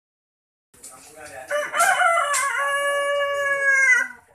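A rooster crowing once: a few short rising notes lead into one long held note that sags slightly in pitch as it ends.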